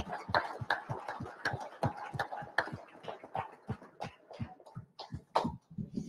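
Audience applauding: a scattered run of hand claps that thins out and dies away near the end.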